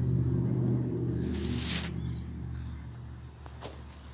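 A road vehicle's engine hum passing and fading steadily away, with a brief hiss about a second and a half in.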